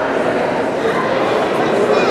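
Indistinct chatter of many people in a large hall, overlapping voices with no single speaker standing out.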